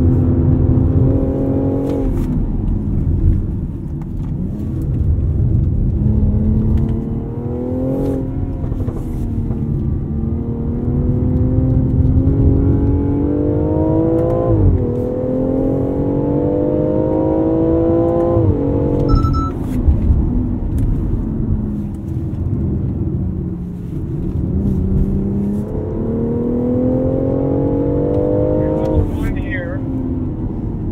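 Cabin sound of a BMW X4 M40i's turbocharged 3.0-litre inline-six on track. It rises in pitch under throttle and falls back abruptly, about five times, over a steady low rumble of tyre and road noise.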